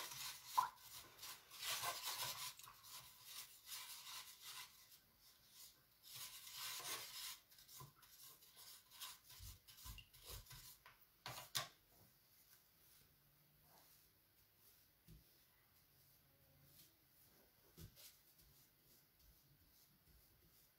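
A paintbrush being rubbed and wiped to clean the paint off it: soft rubbing and scrubbing for about ten seconds, ending with a light tap, then stopping.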